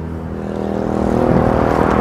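A car approaching along the road, its tyre and engine noise growing steadily louder as it nears.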